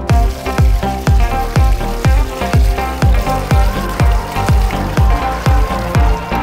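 Carbonated soda poured onto water beads, fizzing with a steady hiss. Electronic dance music plays over it, with a kick drum about twice a second.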